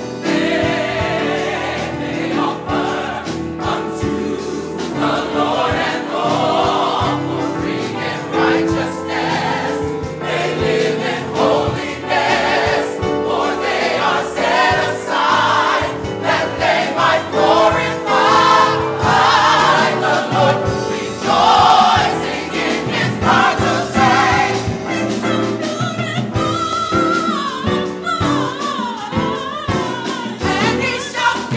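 Gospel choir singing full-voiced, with many voices together carrying a melody over sustained chords.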